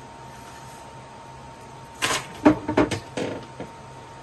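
A steady faint hum, then from about halfway a quick run of knocks and clatters as items are packed into an under-settee storage locker and its hatch lid is handled, the sharpest knock coming just after the clatter begins.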